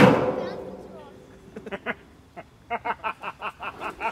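A hammer strikes the sealed 200-litre steel drum with a loud metallic bang, and the ring dies away over about a second without the drum imploding. From about a second and a half in, a string of short laughs follows.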